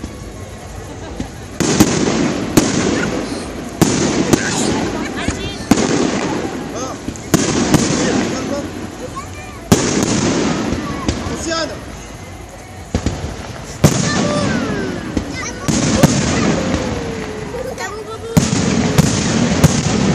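Aerial firework shells bursting one after another, about a dozen sharp bangs each trailing off in a rumble, with a brief lull about two-thirds of the way through.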